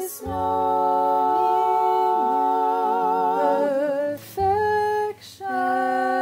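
A cappella vocal quartet singing: several voices hold sustained chords in harmony, with vibrato at the ends of phrases. There are short breaks between phrases near the start, about four seconds in, and just after five seconds.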